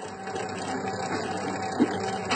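Dough-kneading mixer running steadily, its motor humming as the hook works a stiff dough in the bowl.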